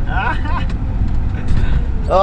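Steady low engine and road rumble inside a moving vehicle's cab on a rough road, with a man's voice briefly in the first half-second.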